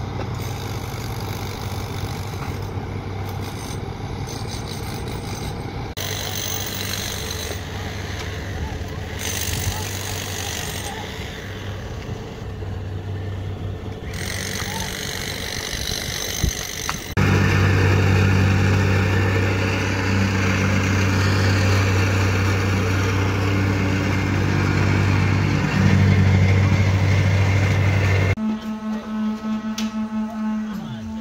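Diesel engine of a CAT hydraulic excavator running steadily. About 17 seconds in, the sound cuts abruptly to a louder, steady engine drone that lasts about 11 seconds, then changes again to a different steady tone near the end.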